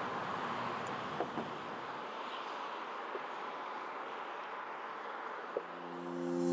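Faint, steady outdoor background noise, like distant traffic, with a few small clicks. Steady music tones come in near the end.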